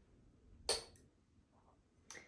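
One short clatter about two-thirds of a second in, from an object being put down or picked up, with a brief ring-out. Otherwise quiet room tone.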